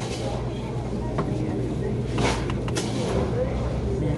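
Background chatter of diners in a busy restaurant dining room over a steady low hum, with a short sharp clatter a little past halfway.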